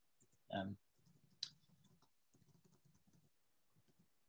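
Near silence broken by one short, sharp click about a second and a half in, just after a brief spoken "um".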